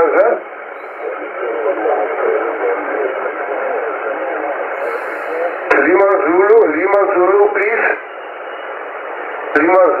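Yaesu FT-7 shortwave transceiver receiving amateur voice stations on the 10-metre band: a steady band hiss confined to a narrow, telephone-like range, with faint voices under the noise. A stronger received voice comes through for about two seconds in the middle, and another begins near the end.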